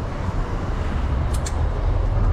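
Low steady rumble of street noise, with two quick faint clicks about one and a half seconds in.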